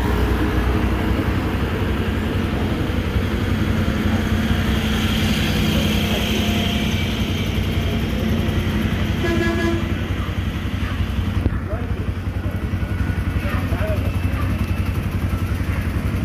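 Bajaj Pulsar NS200's single-cylinder engine running steadily, with its rear wheel spinning on the stand while the chain area is checked during a service.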